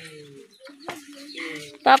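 Faint clucking of chickens, with a voice starting to speak right at the end.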